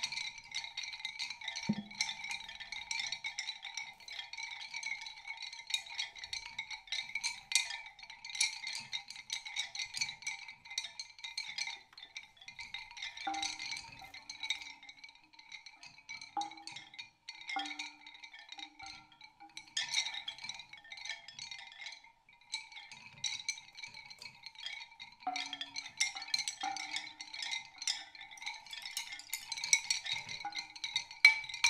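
Live experimental percussion: high ringing tones held steady under a constant patter of light clicks and taps, with short lower pitched notes coming in about halfway through.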